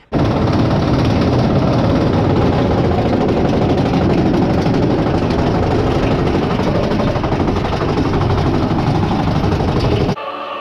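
Big Thunder Mountain Railroad mine-train roller coaster running along its track, heard from on board: a loud, steady rumble and rattle of the train on the rails. It starts abruptly just after the start and cuts off sharply at the end.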